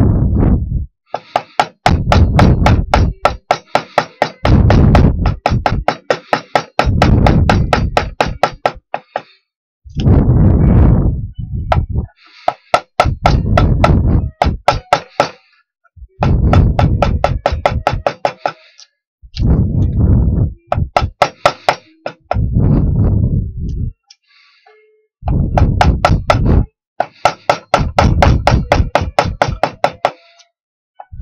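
Wood rasp worked quickly back and forth on a wooden block clamped in a bench vise, in runs of rapid scraping strokes lasting a second or two, with short pauses between.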